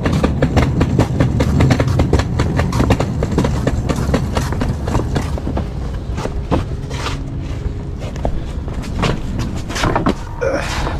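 A metal-framed bed base with zigzag springs being carried and handled: a quick, continuous clatter and rattle of the frame over footsteps.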